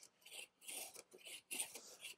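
A No. 5 hand plane taking several short, faint strokes across a glued-up cherry board, its blade skimming the surface to flatten it.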